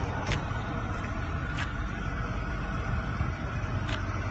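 Volkswagen Cabrio's four-cylinder engine idling with a steady low rumble. Three light clicks come through, one shortly after the start, one about halfway and one near the end.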